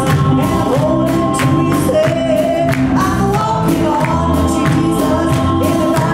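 A mixed group of singers singing a gospel worship song together, with musical accompaniment keeping a steady beat underneath.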